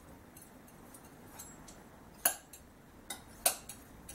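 Faint ticks and clinks of a tool working oil paint on a glass palette, with two sharper clicks in the second half.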